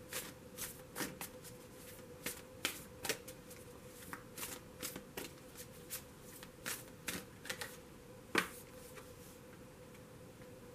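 A tarot deck being shuffled by hand: a quiet string of irregular card flicks and snaps, one sharper snap near the end.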